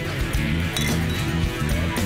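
Background music with a short clink of glass, about three-quarters of a second in.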